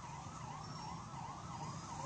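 A vehicle siren yelping in quick rising-and-falling sweeps, about three a second, fairly faint over a low rumble.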